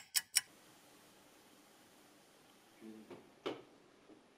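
Fast, even clock-ticking sound effect at about five ticks a second, stopping about half a second in. Then quiet room tone, with a brief murmur and a single light tap near the end.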